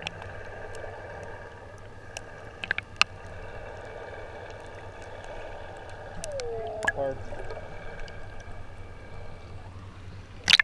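Underwater sound picked up by a camera just below the surface: a steady low hum with faint steady tones, scattered sharp clicks, and a short wavering warble about six to seven seconds in.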